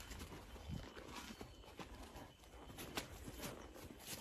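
Quiet outdoor background with a few faint scattered clicks and rustles.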